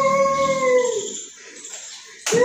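A long howl held on one steady pitch, fading out about a second in.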